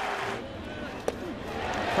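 Ballpark crowd murmuring, with faint voices in it and a single sharp click about a second in.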